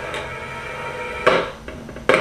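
One heavy blow on wood, a sharp thud a little over a second in, over a faint low background hum.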